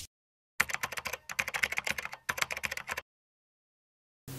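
Keyboard typing sound effect: a rapid, irregular run of key clicks lasting about two and a half seconds.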